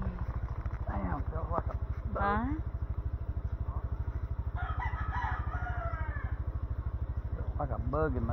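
Motorcycle engine running at low speed with an even, rapid putter, while a rooster crows over it, the longest crow around the middle.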